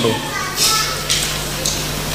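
Pause in a talk, with the background of the hall audible: children's voices in the audience and a steady low hum.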